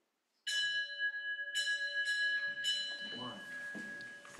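A small bell struck three times about a second apart, each strike ringing on with several clear tones that hang over one another.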